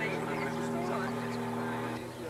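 A steady mechanical drone holding one pitch, with voices talking faintly over it.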